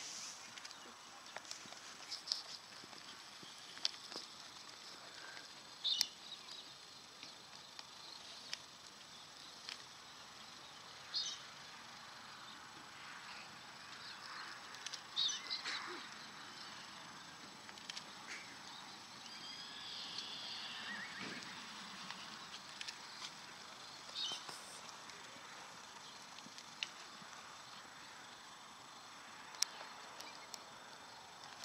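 Quiet outdoor ambience with a steady low background and a handful of brief, high-pitched chirps scattered through it.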